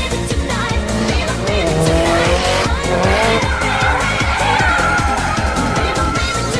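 A drift car's engine revving and its tyres squealing as it slides through a hairpin. The revs rise about halfway through, followed by a long tyre squeal, over background music with a steady beat.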